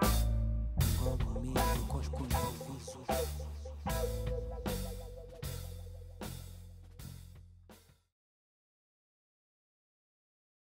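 A band with upright double bass, electric guitar and drums playing the closing bars of a song: drum and cymbal hits about every three-quarters of a second over a held low bass note. The music fades steadily and stops about eight seconds in, leaving silence.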